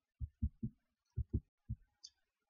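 Six faint, soft, low thumps in two groups of three, with near silence between them.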